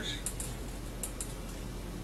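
Steady low electrical hum under a pause in speech, with a few faint, sharp clicks: two near the start and two more about a second in.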